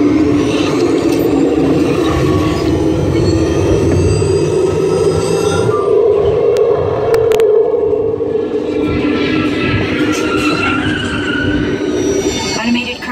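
Test Track ride vehicle running along its track: a steady loud rumble and hum, with a few sharp clicks about seven seconds in.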